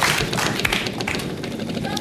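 Game-show prize wheel spinning, its pegs clicking against the pointer in a fast run of ticks.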